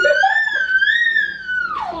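A person's long, high-pitched squeal that wavers up and down and drops away near the end.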